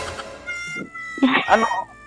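Talk over a video call: one voice trails off at the start, and a short spoken "Ano?" comes about halfway through. Under it, faint steady held tones, like background music, sound throughout.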